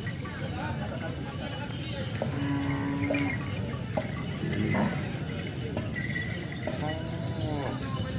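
Outdoor crowd chatter, many voices mixed together. A short steady tone sounds a little over two seconds in, and a few rising-and-falling notes come near the end.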